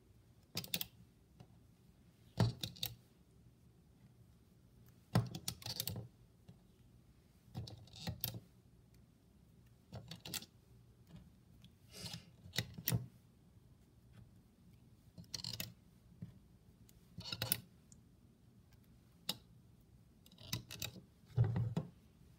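Rubber bands being stretched and slipped onto the clear plastic pegs of a Rainbow Loom, fingers knocking against the pegs: short, irregular clicks and rustles every second or two.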